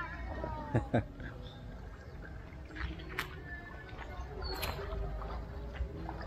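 A person's high squeal sliding down in pitch, with a laugh, in the first second. After it come quieter outdoor sounds: a few sharp clicks and a low rumble.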